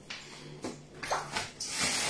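Plastic shopping bags rustling and crinkling as they are handled: a few scattered crackles at first, then a louder, continuous crinkling near the end.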